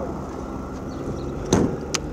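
Steady low rumble of vehicles in a parking lot, with two sharp clicks near the end, about half a second apart.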